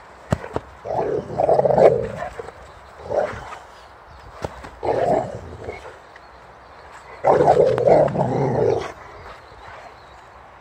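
Boxer dog growling in play with a ball held in its mouth, in four bursts. The longest growls come about a second in and near the end, each lasting about a second and a half, with shorter ones between.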